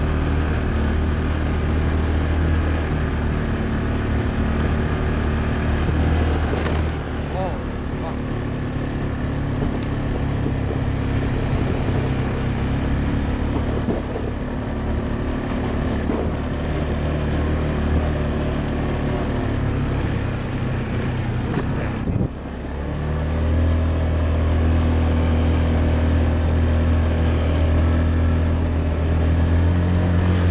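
Yamaha ATV engine running under throttle as the quad rides a trail, its note easing off about a quarter of the way in, dipping briefly about two-thirds through, then pulling harder and louder to the end.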